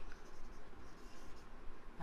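Marker pen writing on a whiteboard, quiet.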